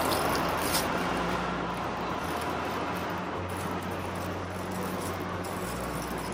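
Steady outdoor city background with a low hum like traffic, and light crinkling of a plastic pastry bag being handled.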